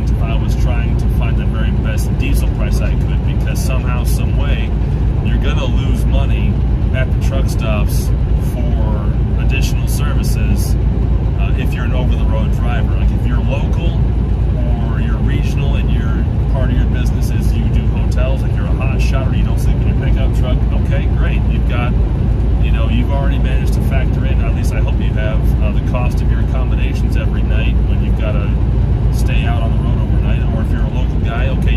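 A man talking inside a moving semi-truck's cab, over the steady low drone of the truck's engine and road noise at highway speed.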